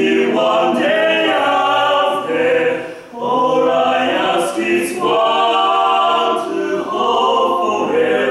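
Male a cappella quartet singing in close harmony with no instruments: held chords in phrases, with a short break between phrases about three seconds in.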